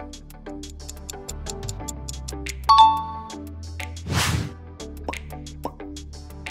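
Quiz background music with a steady ticking beat. A bright chime rings out about two and a half seconds in, and a short whoosh follows about four seconds in.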